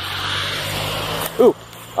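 A car passing on the road, its tyre and engine noise a steady rush that cuts off suddenly just over a second in.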